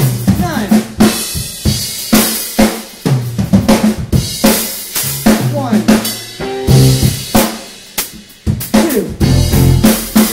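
Drum kit played in a live rock band's instrumental passage: snare, bass drum and cymbal hits over electric bass and other pitched instruments. The playing drops away briefly about eight seconds in, then the band comes back in with a loud hit.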